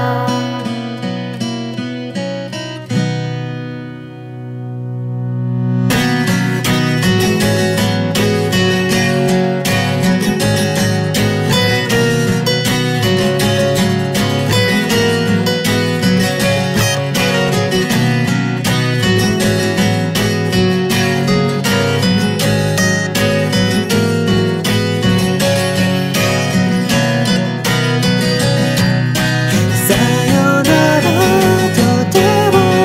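Acoustic guitar playing an instrumental passage: a chord is left ringing and dies away over a few seconds, then a busy strummed pattern starts up about six seconds in and carries on steadily.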